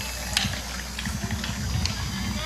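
Quiet soccer-game ambience with faint distant voices and field noise over a low steady hum.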